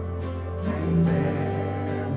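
Live worship band: voices singing a slow song over acoustic guitar, with a steady low bass note underneath.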